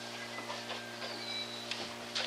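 Steady low hum and hiss from an old analogue tape recording, with a few faint ticks.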